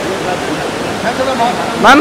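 Steady rushing background noise with faint voices in it, and a man calling out loudly near the end.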